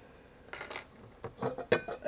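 Light metal clinks and knocks as a sealed-beam headlight is handled and lifted out of its metal headlight housing and chrome rim. A few scattered clinks start about half a second in, and one near the end rings briefly.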